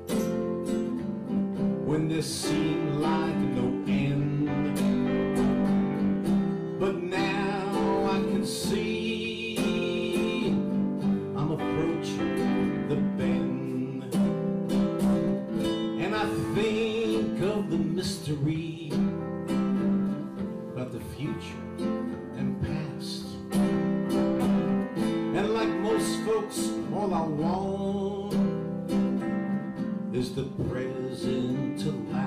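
Acoustic guitar strummed in a simple chord progression in C, accompanied by a keyboard.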